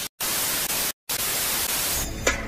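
Television static hiss used as an editing transition effect, steady across the range, cut off twice by brief dead silences, once just after it starts and again about a second in.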